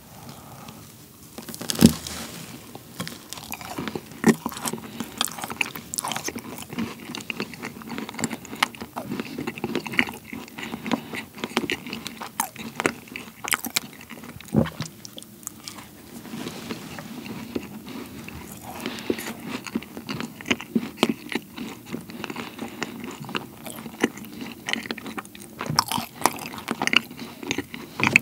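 Close-miked biting and chewing of a fat chocolate Oreo-cookie macaron: a crisp bite about two seconds in, then continuous chewing with crunching of cookie pieces, and another bite near the middle.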